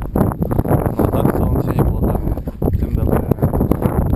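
Wind buffeting a camera microphone: a loud, uneven low rumble that never settles.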